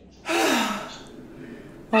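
A woman's loud, breathy sigh, falling in pitch, about a quarter second in: an exhausted exhale.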